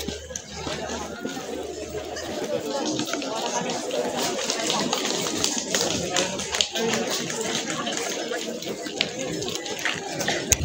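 Crowd chatter: many voices talking at once with no single clear speaker, with scattered short taps through the middle.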